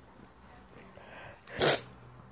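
A single short, sharp sneeze near the end, loud and sudden against a quiet room.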